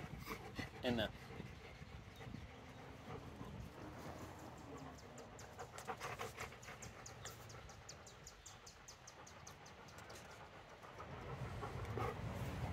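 A dog panting close up, in a run of quick, short breaths between about five and seven and a half seconds in; otherwise faint.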